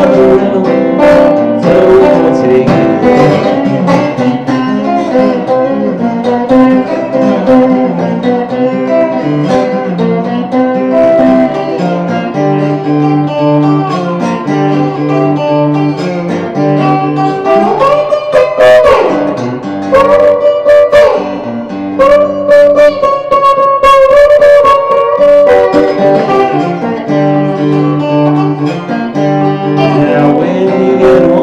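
Electric guitar played fingerstyle with a metal slide in a blues style: a repeating low bass pattern under slid melody notes, with one long slide up and back down about two-thirds of the way through.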